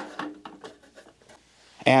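Bottom cover panel of a Korg 01/W synthesizer being lifted off the case: a sharp knock as it comes free, then light scraping and rubbing as it is slid and swung back.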